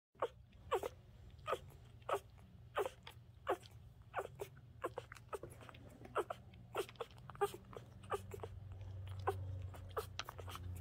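Newborn husky puppies nursing at their mother, making short soft sounds that repeat about every two-thirds of a second, over a low steady hum that grows louder near the end.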